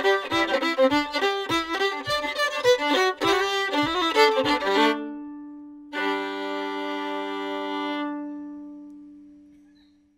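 Solo fiddle playing an old-time tune over a steady low beat, breaking off about five seconds in; a second later a long final chord is bowed, held, and then fades away.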